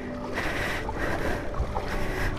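Floodwater sloshing and splashing around a scooter as it is pushed by hand through the water, engine off.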